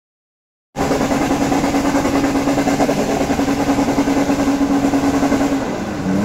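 Toyota FJ Cruiser's engine held at high, steady revs while its tyres spin and churn through loose dirt on a steep climb. The sound starts suddenly just under a second in.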